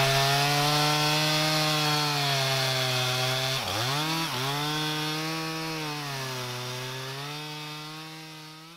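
A chainsaw's two-stroke engine running at high speed, its pitch dipping twice a little before halfway as it is briefly loaded, then fading out near the end.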